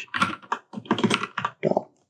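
Computer keyboard typing: a quick uneven run of keystrokes in short clusters.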